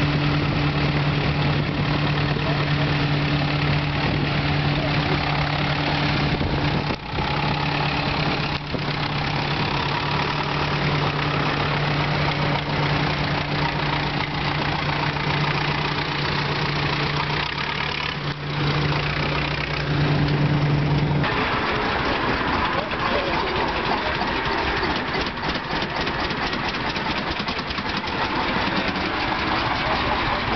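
David Brown 1210 tractor's diesel engine running at a steady speed as it drives past, a steady hum that cuts off suddenly about two-thirds of the way in. After that, a mix of voices and engines idling.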